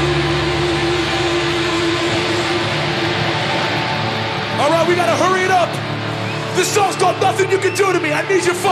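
Live band's amplified guitars holding a ringing chord that fades out over a few seconds, then a crowd shouting. Sharp rhythmic hits start near the end, about three a second.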